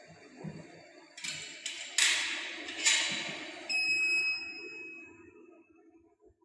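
A rushing, hissing noise with a few sharp strokes for about two and a half seconds, then a single electronic beep from a semi-auto biochemistry analyzer that starts suddenly and rings away over about two seconds. The beep marks the end of the reagent-blank measurement, as the analyzer prompts for the sample to be aspirated.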